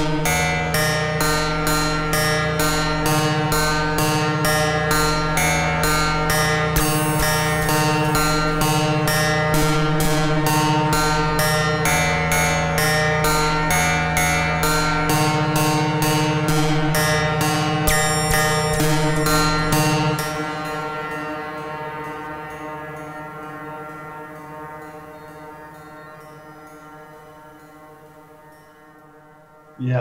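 Modular synthesizer playing a repeating pulsed sequence over a steady low drone and sustained pitched layers. About two-thirds of the way through, the pulse stops and the sound fades slowly away.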